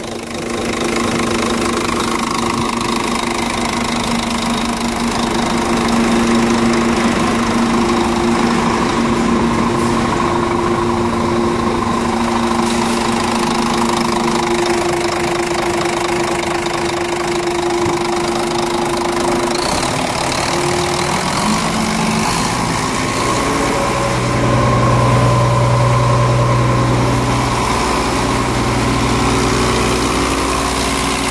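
Heavy truck diesel engine idling with a steady hiss over it, the engine running to build air pressure so that a leak in the truck's compressed-air system can be found. The engine note shifts about two-thirds of the way through, and a deeper hum swells for a few seconds near the end.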